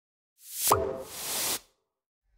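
Intro-animation sound effects: a rising whoosh that ends in a short pitched pop, then a second whoosh that cuts off suddenly about a second and a half in.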